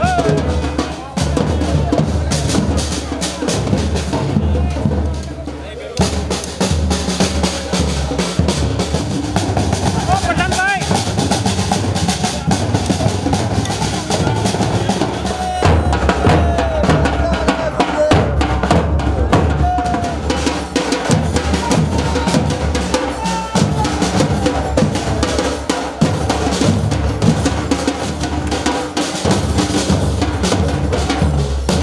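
Drums and other percussion beating a dense, steady rhythm, with voices calling out over them.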